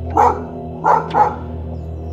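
A dog barking three times in short, sharp barks, the last two close together, over steady background music.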